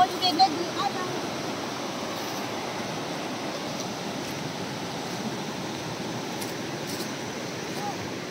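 Rushing river water flowing over rocks: a steady, even rush. A voice is heard briefly in the first second.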